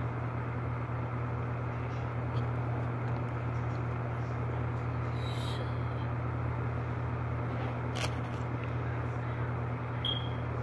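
Steady low background hum, with a couple of faint clicks from the plastic parts of an action figure being handled, about five seconds in and near eight seconds.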